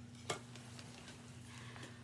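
Quiet room tone with a faint steady low hum, broken by a single sharp click about a third of a second in.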